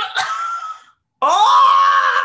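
A woman's short squeal, then, a little over a second in, a long, loud scream of laughter that rises and falls in pitch: a shriek of grossed-out amusement.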